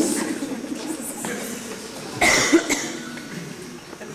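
A cough about two seconds in, among faint voices.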